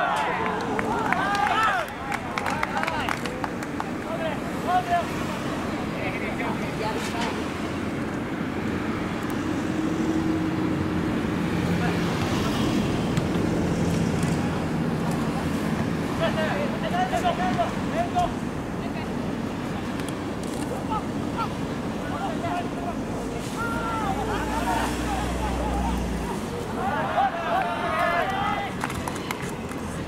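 Scattered shouts and calls from soccer players on the pitch during play, short bursts every few seconds, over a steady outdoor background noise.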